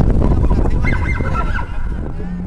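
Wind rumbling on the camera microphone, fading toward the end, with a short high-pitched call of a couple of held notes about a second in.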